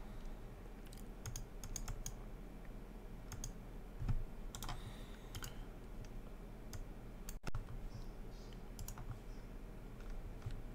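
Scattered computer keyboard taps and clicks, a few short clicks spread over several seconds, over a faint, steady low hum.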